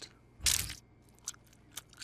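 Cartoon bite sound effect: one crunchy chomp into a chocolate cake, followed by a few quick, small crunches of chewing.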